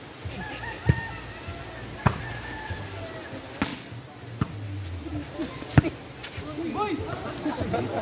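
A volleyball being struck by hands during a rally: about five sharp slaps a second or so apart, the loudest near six seconds in, with voices of players and onlookers in the background.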